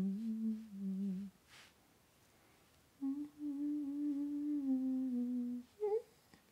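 A woman humming a slow, wordless tune: a falling phrase that stops about a second in, a pause, then one long held note that slowly sinks in pitch, and a short note at the very end.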